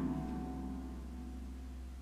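A keyboard chord ringing out and slowly dying away, over a low steady hum.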